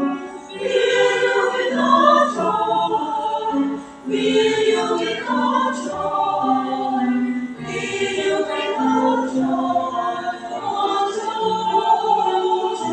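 A choir of mostly women's voices singing a sacred anthem in several-part harmony, in held, sustained phrases. The singing dips briefly for a breath about half a second in and again just before the fourth second, then goes on.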